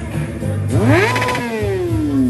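Sportbike engine revved once: the pitch climbs sharply about a second in, holds for a moment at the top, then winds down slowly as the throttle is let off. Background music plays under it.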